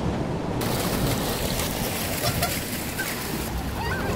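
Steady rush of falling water with a low rumble, a dense noise without pitch; its character changes abruptly about half a second in.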